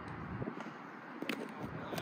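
Faint open-air ballfield background with two brief sharp knocks, about half a second in and just past a second in, from the baseball being played at home plate.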